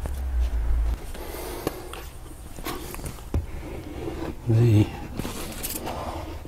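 A low rumble for the first second, then a few light knocks of objects being handled on a workbench, and a short hummed sound in a man's voice a little over halfway through.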